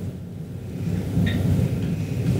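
A low, steady rumble of background room noise, with no speech.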